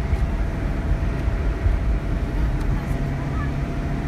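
Steady low rumble of a car driving along a highway, engine and tyre noise heard from inside the cabin.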